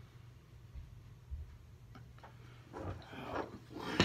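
Quiet room with faint knocks and clicks from a glass beer bottle being handled, and a soft rustle near the end.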